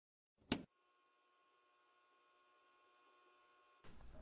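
Near silence, broken by one short click about half a second in, followed by a very faint steady electronic tone.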